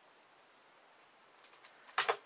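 Faint room hiss, then a few light clicks near the end and one sharp click as two plastic puzzle cubes are handled in the hands.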